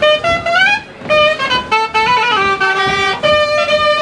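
Live folk dance tune played on reedy wind instruments, a bright, horn-like melody line moving in quick steps with short slides between notes.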